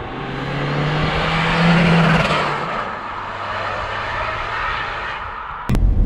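Seat Ibiza 6J with a tuned 1.6 TDI common-rail diesel driving past. Engine and tyre noise build to a peak about two seconds in, the engine note drops in pitch as the car goes by, and the sound then fades away.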